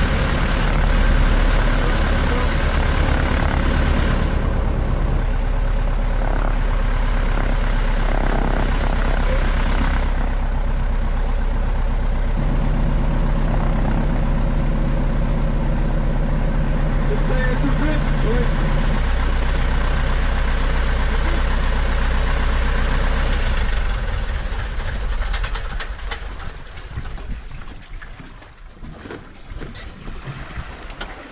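Piper PA-18 Super Cub floatplane's engine and propeller running at low taxi power, the pitch stepping up and down a few times as the throttle is worked. About 24 seconds in the engine sound dies away, leaving water splashing around the floats.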